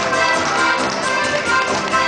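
Live alpine folk band playing: accordion, guitar and electric bass over a steady beat of sharp taps.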